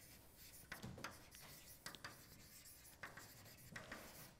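Chalk writing on a blackboard: faint, irregular taps and short scrapes as the chalk strokes out words.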